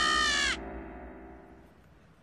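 A cartoon character's long, anguished scream of despair, held on one drawn-out vowel and falling slightly in pitch, cutting off about half a second in.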